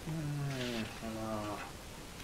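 A man humming two long, low notes in a row, the first slightly falling, as a wordless "hmm… mm" while searching for a page in a book.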